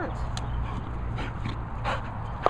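A working cocker spaniel right at the microphone, whimpering briefly, with a few sharp clicks from its movement and handling.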